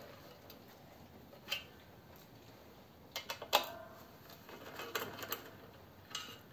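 Faint metallic clicks and taps from a socket wrench turning the bolts of a car clutch pressure plate, with a short cluster of sharper clicks about three and a half seconds in.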